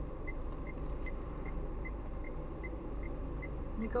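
Car idling in traffic, heard from inside the cabin as a steady low rumble, with a faint high tick repeating about two and a half times a second.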